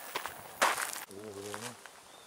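A short, loud burst of rustling noise a little past half a second in, followed by a brief wordless hum in a man's voice.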